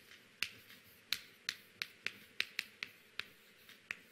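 Chalk clicking and tapping on a chalkboard as words are written: about ten short, sharp clicks at an uneven pace.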